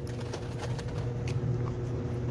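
Faint clicks of chewing food close to the microphone over a steady low background hum.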